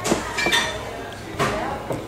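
Metal spoons and dishes clinking at a table: a spoon scraping and tapping a glass sundae goblet and plates, about four sharp clinks with a short ring.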